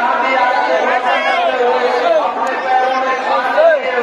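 Crowd of many men's voices chanting and calling out over one another, continuous, with some voices holding steady notes.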